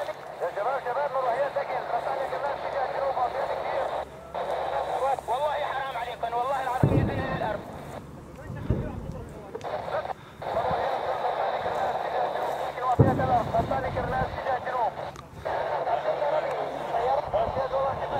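Two sudden low booms of distant rocket impacts, about seven and thirteen seconds in, each rumbling for a second or so. Voices of people near the camera run underneath.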